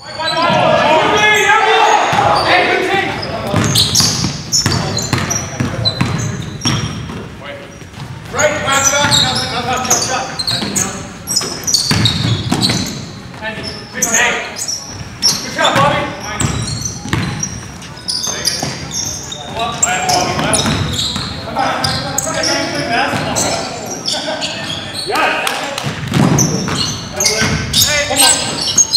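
Live basketball play in a gymnasium: the ball bouncing on the hardwood floor, with players' indistinct shouts and calls echoing in the hall.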